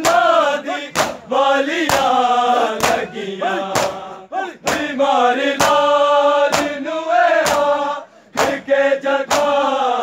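Chorus of men chanting a Punjabi noha lament in unison, punctuated by sharp in-time hand strikes on bare chests (matam) about once a second. The chant breaks off briefly a little after eight seconds, then resumes.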